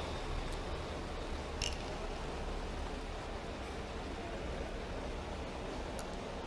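Steady low background noise of a room or open microphone, with one brief click about a second and a half in.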